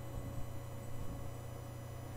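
Steady low electrical hum with faint background hiss, and no distinct event.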